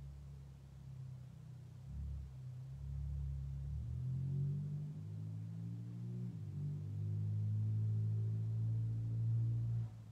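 Low, gong-like musical drone with several notes layered, swelling over several seconds and cutting off suddenly near the end.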